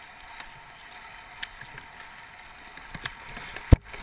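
Kayaks paddled through river current: a steady rush of moving water with a few small paddle splashes, and one sharp knock close to the camera near the end.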